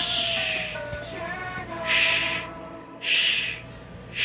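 Soundtrack music played from a VHS tape: held tones with a slow, wavering melody, cut across by four short hissing whooshes about a second apart.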